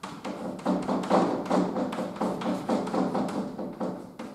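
Chalk writing on a blackboard: a quick, irregular run of taps and scrapes, several a second, as letters are written.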